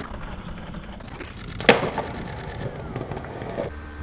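Skateboard clip audio: a skateboard on concrete, dull and muffled for the first second as the footage runs in ramped slow motion. Then one sharp, loud crack of the board comes just under two seconds in.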